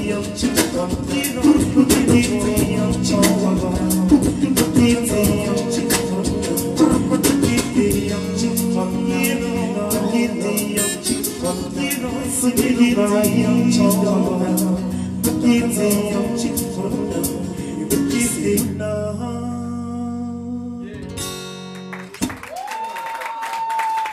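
Live male vocals over a strummed guitar. The song ends about 19 seconds in on a chord left ringing out, and a single high held tone sounds briefly near the end.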